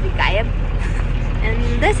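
Bus engine running, a steady low drone heard from inside the cabin, with brief voices over it.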